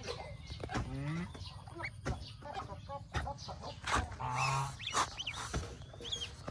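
Goslings peeping: short, high calls, most of them about four to five seconds in, with a lower, longer call among them.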